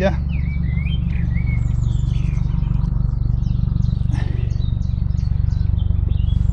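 A steady low engine drone, which the angler puts down to the army being busy, with small birds chirping over it. A few swooping chirps come in the first two seconds, then a quick run of short high notes.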